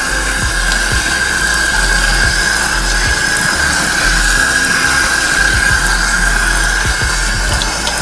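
Sink faucet running, its stream pouring onto wet hair and into the sink as a steady rush, with a constant high-pitched tone under it.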